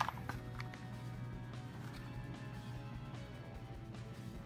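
Background music with sustained, steady tones.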